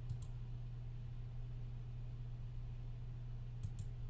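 Computer mouse button clicking: two quick clicks just after the start and two more near the end, over a steady low electrical hum.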